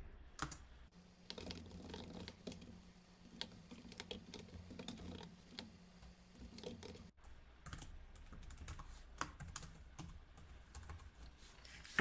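Typing on a computer keyboard: faint, irregular keystrokes. A faint low hum runs under the typing from about a second in until about seven seconds in.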